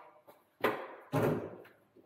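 Two thumps about half a second apart, each trailing a short echo.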